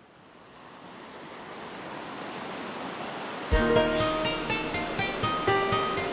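Ocean surf, a steady wash of breaking waves, fading in and growing louder; about three and a half seconds in, music starts suddenly over it with sustained notes and a regular beat.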